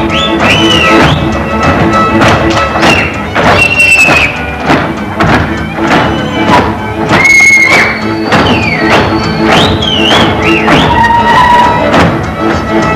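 Hungarian folk dance music played by a string band of violin and double bass, with a steady pulsing bass and sliding high notes, mixed with the dancers' feet stamping and knocking on the stage floor.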